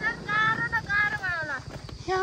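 A young woman's high-pitched voice making drawn-out vocal sounds without clear words: a held note, then a sliding fall in pitch about a second in.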